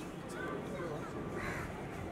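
A crow cawing twice: a short call about half a second in and a louder one near the end, over a murmur of background voices.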